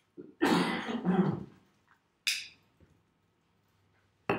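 A man coughing, a harsh cough in two quick pushes, followed about two seconds in by a short hissing breath.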